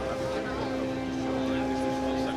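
Indistinct chatter of many voices in a large hall, over a steady hum.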